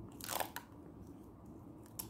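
A kitten biting and chewing at a charger cable: one short crunch a few tenths of a second in, then a couple of faint clicks.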